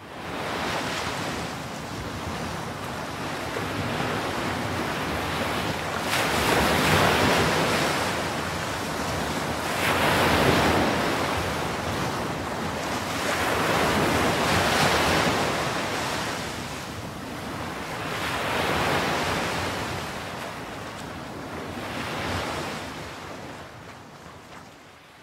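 Ocean surf: a broad wash of breaking waves that swells and falls back in slow surges about every four seconds.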